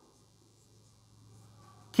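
Marker pen writing on a whiteboard: faint scratching strokes, mostly in the second half, over a low steady hum. A man's voice cuts in right at the end.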